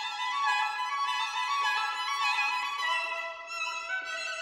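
Background music: a melody of held notes in a high register, with no bass.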